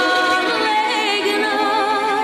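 A woman singing a Macedonian folk song in a full voice with wide vibrato, holding long notes, over sustained accompaniment from violins and cello.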